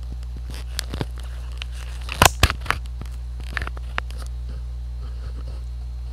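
A steady low hum with a handful of short, sharp clicks scattered through the first four seconds, the loudest pair a little over two seconds in.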